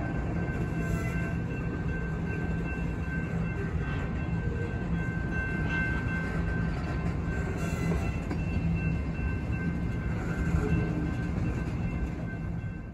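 Tank cars of a slow freight train rolling past, a steady rumble of wheels on the rails with a faint steady high whine over it.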